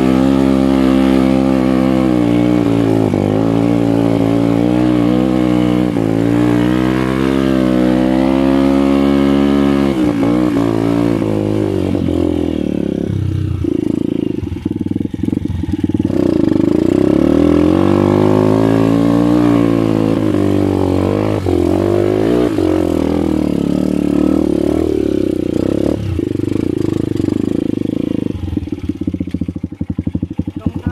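Dirt bike engine ridden on a trail, its pitch rising and falling repeatedly as the throttle is opened and eased off. Near the end it drops to a lumpy idle with distinct, rapid firing pulses.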